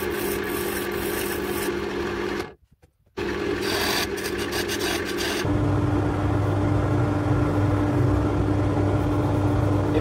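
Wood lathe running with a steady hum while an oak trowel handle spins and is worked by hand against the turning wood. The sound drops out briefly about two and a half seconds in, and the lathe's hum changes to a lower, steadier tone about halfway through.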